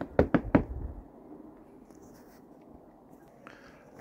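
Four quick, sharp knocks within the first second, then only a faint steady background hiss.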